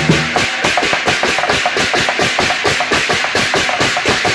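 Lion dance percussion: hand cymbals and gongs clashing in a fast, steady rhythm over quick dry taps of drumsticks, with no deep booms from the big drum's head.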